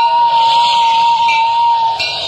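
A flute holds one long, steady note that stops just before the end, over a background hiss.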